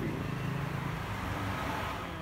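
A motor vehicle's engine running nearby, a steady low hum.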